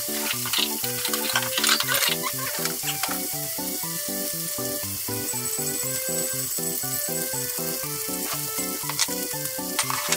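Bone-in beef short ribs (kalbi) sizzling steadily as they fry in a pan, with a few sharp clicks about a second in and again near the end.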